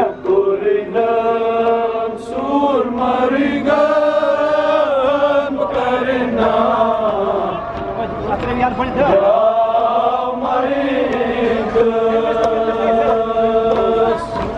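Male voices chanting a Kashmiri noha, a Muharram lament, in long held melodic lines that rise and fall.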